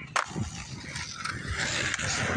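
Skateboard landing on concrete after a flip trick: one sharp clack about a fifth of a second in, then the wheels rolling away with a low rumble.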